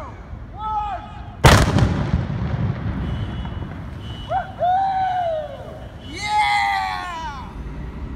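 A one-gallon gasoline explosion: one sharp blast about a second and a half in, followed by a rumble that dies away over a couple of seconds. Voices call out before and after the blast.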